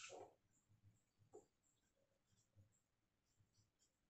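Near silence, with faint scratches and squeaks of a marker writing on a whiteboard. A brief, louder sound comes right at the start and a weaker one about a second and a half in.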